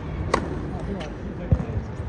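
Tennis serve: a sharp crack of the racket strings striking the ball, followed about a second later by a fainter click and then a louder, dull low thump.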